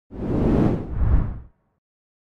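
A whoosh sound effect with a deep low rumble, swelling twice, that cuts off after about a second and a half.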